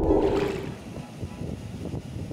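Sea surf washing against rocks, with wind buffeting the microphone; loudest in the first half second, then a steady rough rush.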